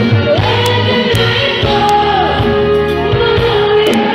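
Live concert performance: a female lead singer holds and slides sung notes over a full band with drums, bass, electric guitars and keyboards, with backing singers behind her. Amplified through the PA and heard from the audience, with the hall's reverberation.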